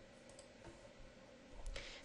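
A few faint computer mouse clicks against quiet room tone.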